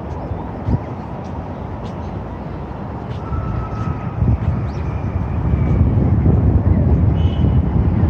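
Outdoor city ambience: a steady low rumble of road traffic and wind buffeting the microphone, growing louder in the second half, with a few faint short high chirps above it.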